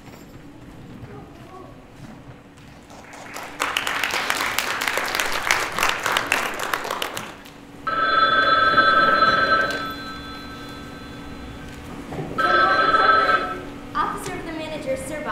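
A telephone bell ringing twice, a ring of about two seconds and then a shorter one. Before it, a few seconds of audience applause.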